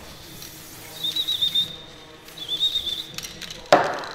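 Aerosol grease can spraying onto a drive shaft's joint and splines in two short bursts, hissing with a thin wavering whistle. A sharp loud knock near the end.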